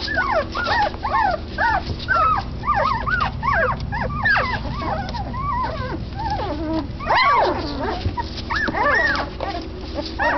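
A litter of twelve-day-old Doberman Pinscher puppies whimpering and squeaking, with many short rise-and-fall cries overlapping one another. One longer, louder cry comes about seven seconds in.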